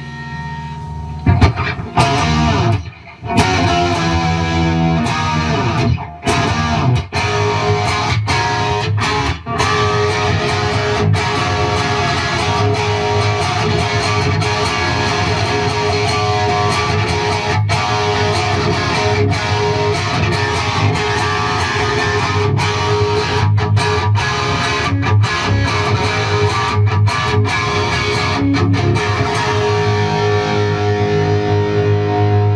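Gibson Les Paul 1960 reissue with Iron Gear Blues Engine humbucking pickups, played through an overdriven amp: distorted chords and riffs with the notes ringing out and plenty of harmonics. There are short pauses about three and six seconds in, then continuous playing.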